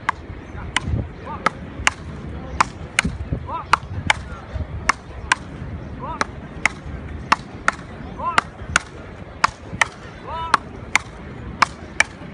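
Frescobol paddles striking a rubber ball in a continuous rally: sharp clacks at an even pace, a little more than one a second. Short voiced shouts from the players come between some of the hits.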